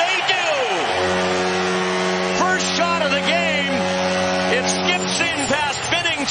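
Arena goal horn blowing one long steady blast, starting about a second in and cutting off near the end, sounded for a home-team goal.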